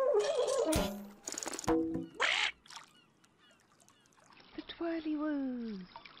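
Short cartoon sound effects with a few quick high chirps, then a falling pitched 'woo'-like voice glide in the second half.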